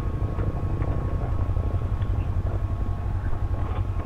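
Bristol Venturi 500 adventure motorcycle running steadily at low speed on a dirt descent, heard as a low rumble mixed with wind noise on the helmet microphone.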